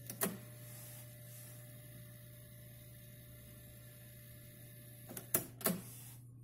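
Trio KX-800 cassette deck's transport engaging with a click, then the tape mechanism running with a faint steady whine and hiss for about five seconds. About five seconds in, two or three more mechanical clunks as the keys are pressed again, and the running noise stops.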